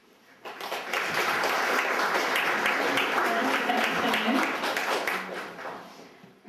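Audience applauding, starting about half a second in, building quickly into a dense clapping and fading out near the end.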